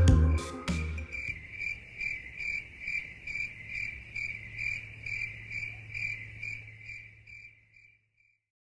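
The outro music stops about a second in. A high, evenly repeating cricket-like chirp follows, about two and a half pulses a second over a low hum, and it fades out near the end.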